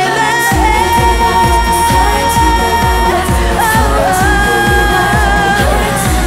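K-pop song performed live: female voices singing long held notes over a pop backing track, with a steady bass beat coming in about half a second in.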